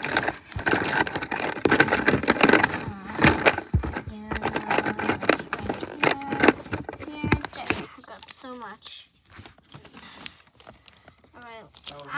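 Toys being rummaged through in a plastic bin: packaging crinkling and rustling, with plastic toys clicking and knocking together, for about eight seconds. After that the rummaging goes quieter and a child's voice murmurs faintly.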